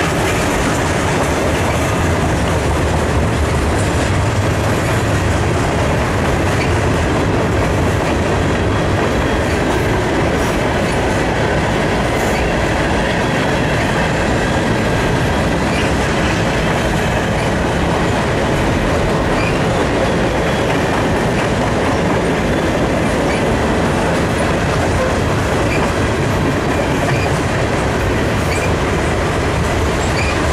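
Cars of a long mixed freight train rolling past: a steady rumble of steel wheels on rail with clickety-clack over the rail joints.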